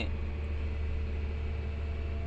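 Komatsu PC200 hydraulic excavator's diesel engine running with a steady low drone, heard inside the cab, with a faint steady whine on top as the boom is worked from the right-hand joystick.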